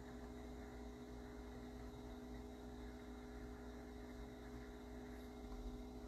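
Faint steady electrical hum with light hiss: quiet room tone with no other sound.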